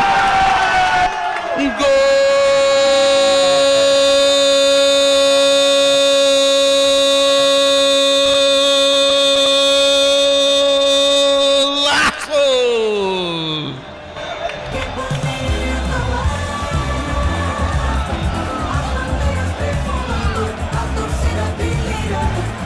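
Football commentators' long drawn-out goal cry: one voice holds a single high note for about ten seconds, a second, lower voice joins it a second later, and both slide down in pitch and break off together. A music jingle with a steady beat then starts up.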